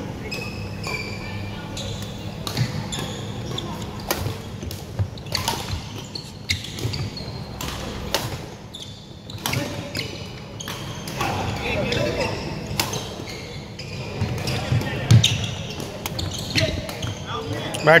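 Doubles badminton rally: repeated sharp racket hits on the shuttlecock and players' footsteps on a wooden court floor, echoing in a large sports hall, with voices from neighbouring courts.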